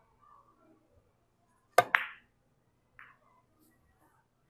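A draw shot in four-ball carom billiards. About two seconds in come two sharp clicks in quick succession: the cue tip strikes the cue ball and the cue ball hits the first red ball. About a second later a fainter click follows as the drawn cue ball meets the second red ball.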